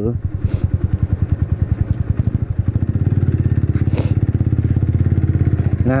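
Kawasaki W175's air-cooled single-cylinder engine running under way, its exhaust beat a quick, even pulse. The beat grows faster and steadier about halfway through as the revs pick up. Two brief hisses come about half a second in and about four seconds in.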